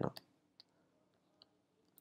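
A few faint, sharp ticks of a stylus tapping on a tablet screen while writing, spaced irregularly through the quiet. A man's voice finishes a word at the very start.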